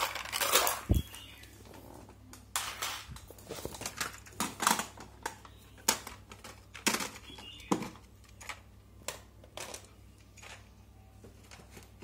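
Irregular clicks, knocks and brief rustles of hands handling things around a cassette deck, over a low steady hum.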